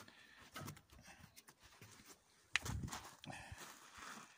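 Footsteps on gravel, irregular and fairly quiet, with one sharper knock about two and a half seconds in.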